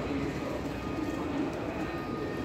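Steady street background noise with faint distant voices and low bird calls.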